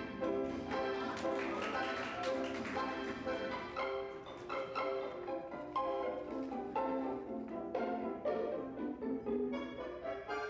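Orchestral tango music with violins playing a melody, with sharp accented notes here and there.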